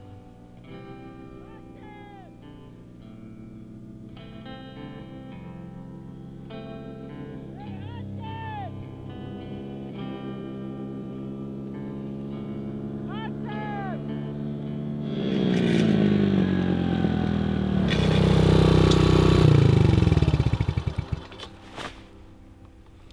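Background music with held chords and sliding notes. About two-thirds of the way through, a small motorbike's engine comes in louder over it, then drops in pitch as the bike slows and pulls up. The engine cuts off just before the end.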